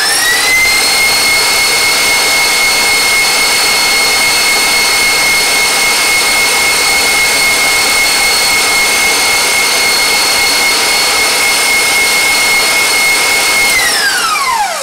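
Tilt-head stand mixer running at high speed with its wire whisk, beating whipped-cream and cream-cheese frosting past stiff peaks. It is a steady, high motor whine that falls away as the mixer is switched off at the very end.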